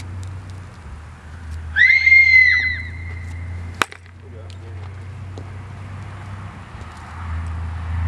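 A loud, high-pitched wavering call, like a squeal or whoop, lasting about a second, followed shortly after by a single sharp crack, over a steady low rumble.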